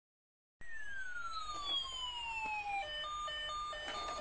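Battery-operated toy fire truck's electronic siren: a long falling whistle tone starts about half a second in and glides down for about two seconds. It then switches to rapid beeps that alternate between two pitches.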